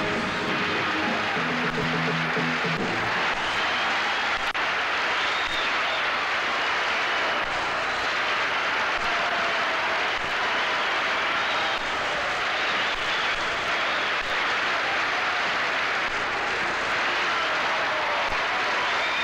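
The band's last low chord dies away in the first few seconds, and steady studio-audience applause follows.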